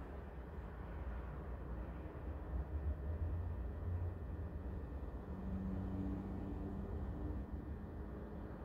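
Low, steady background rumble with no speech. A faint hum joins it for a couple of seconds past the middle.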